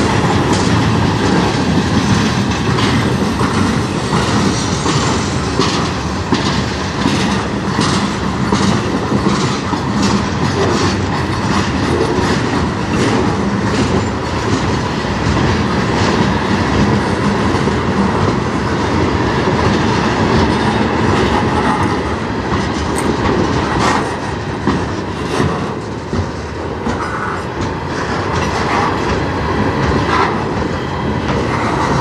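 Freight cars of a manifest train rolling past close by: a continuous rumble of steel wheels on rail, with a steady run of clicks and clacks as the wheel trucks pass over rail joints, and a faint thin wheel squeal at times.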